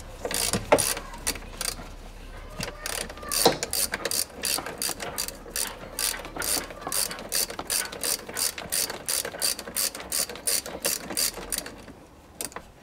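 Hand socket ratchet with a T30 Torx socket clicking steadily, about three clicks a second, as bolts are unscrewed. A few sharper clicks come in the first few seconds.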